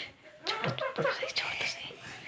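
A young child's voice in short, broken vocal sounds, after a brief sharp burst at the very start.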